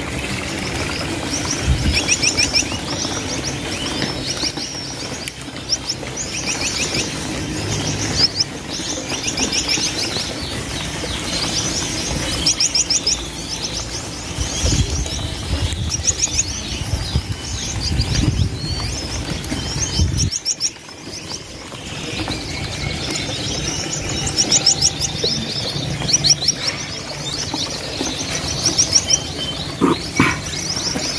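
A large crowd of caged finches, among them Gouldian finches, chirping all together: a dense, continuous chatter of short high calls repeated in quick series, with a brief lull about two-thirds of the way through.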